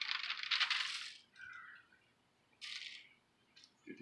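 Shaker bottle of dry barbecue rub shaken over a pork butt, the seasoning granules rattling inside it in a burst of about a second, then again briefly near three seconds.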